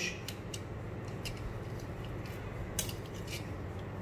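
A handful of light metallic clicks and taps as a transducer carriage is slid and set on the stainless steel mounting rail of a clamp-on ultrasonic flowmeter, over a low steady hum.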